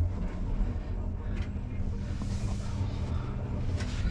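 Elevator car travelling down: a steady low rumble with a faint hum from the drive.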